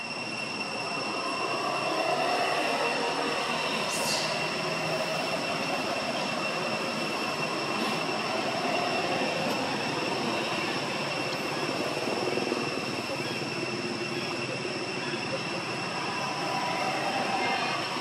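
Steady outdoor background drone with a constant high-pitched whine, and faint voices murmuring in the background.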